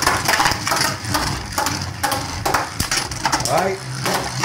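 Two Beyblade Burst spinning tops whirring on a plastic stadium floor and clashing, with a rapid, irregular clatter of small hard clicks as they strike each other and the stadium wall.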